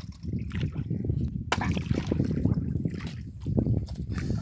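Sea water sloshing and lapping against the hull of a small wooden outrigger boat, with one sharp knock about a second and a half in.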